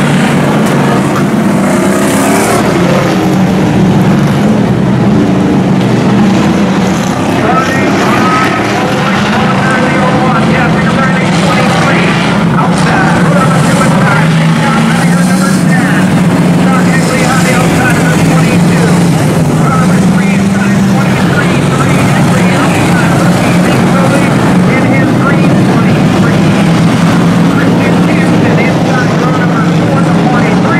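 A pack of hobby stock race cars running flat out around an oval track, many engines blending into one loud, steady drone.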